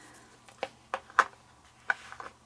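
About four light, sharp clicks and taps as a metal swivel keychain snap and its cotton twine loop are handled and set down on a foam board.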